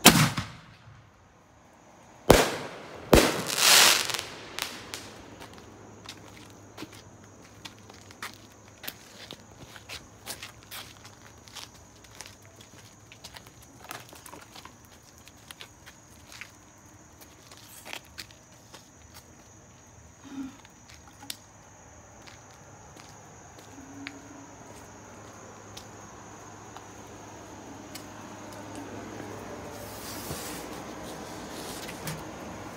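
Fireworks going off: a sharp bang, then two more loud bangs a couple of seconds later, the second trailing into a short burst of crackling. After that come scattered small pops and crackles for about twenty seconds, thinning out.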